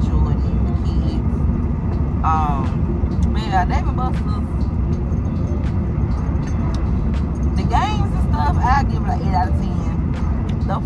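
Steady road and engine noise inside a moving car's cabin, with a woman's voice in a few short stretches.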